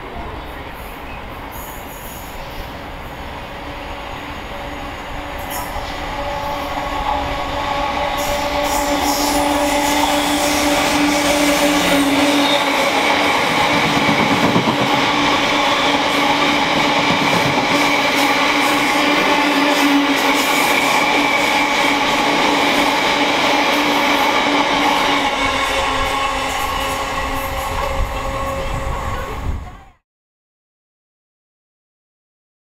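Freightliner Class 66 diesel locomotive, a two-stroke EMD V12, approaching and running through a station with a long freight of box wagons. The sound builds over the first several seconds and then stays loud as the wagons roll past with a steady rumble and a continuous squeal from the wheels. It cuts off suddenly near the end.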